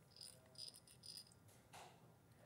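Near silence with a few faint, light clinks and rattles of small beads being handled, spread about half a second apart.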